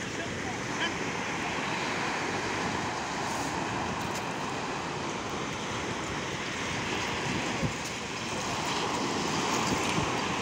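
Sea surf breaking and washing up a sandy beach in a steady rush, swelling a little louder near the end.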